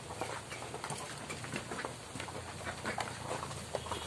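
A large flock of ducks quacking, many short calls overlapping one another without a break.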